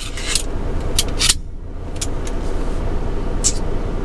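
Steady low hum of an idling truck heard inside the cab, with a few short clicks and rattles from a hand staple gun being handled, near the start, about a second in and again near the end.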